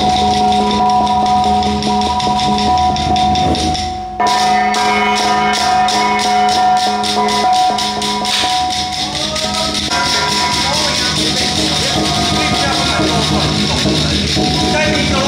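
Taoist Xiaofa ritual music: sustained chanted or played tones over a fast, regular shaken jingling rhythm of several strokes a second. The sound breaks off briefly about four seconds in and then resumes.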